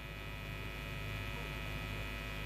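Steady electrical hum of a public-address system, several fixed tones at once, growing slightly louder, while the microphones pick up no speech.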